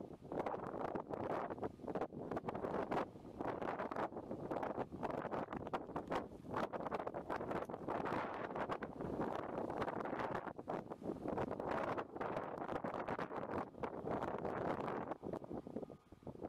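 Wind buffeting the microphone: a gusty, crackling rumble that rises and falls in waves.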